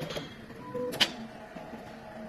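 The drilling head of a CNC plasma cutting machine being driven by its axis motor, a mechanical whir with short steady tones and one sharp click about a second in.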